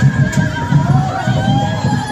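Parade music with a steady low drum beat of about four beats a second and a wavering, gliding melody line above it.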